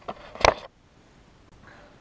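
A few light clicks and one sharp knock about half a second in as the HPI Savage Flux HP RC monster truck is handled and set down on a countertop, followed by quiet room tone.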